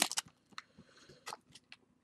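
A few faint, brief crinkles and clicks from a foil trading-card pack wrapper and a small stack of cards being handled.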